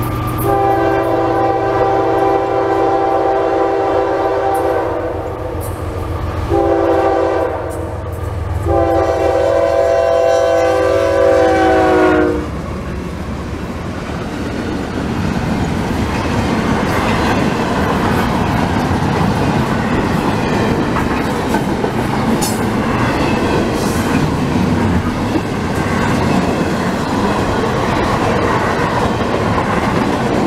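CSX freight locomotive's multi-chime air horn sounding for a grade crossing: a long blast, a short one and a final long one whose pitch drops at the end as the locomotive passes close by. Then comes the steady rumble and clickety-clack of double-stack intermodal cars rolling past.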